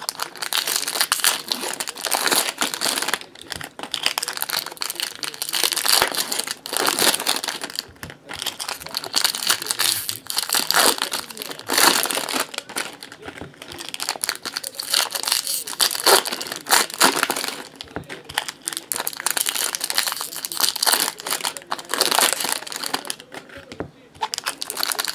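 Foil wrappers of Topps Chrome baseball card packs crinkling and tearing as they are ripped open and handled, an irregular crackle that swells and fades again and again.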